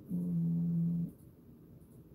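A man's low, closed-mouth hum, a steady 'mmm' held for about a second that then stops, leaving faint room tone.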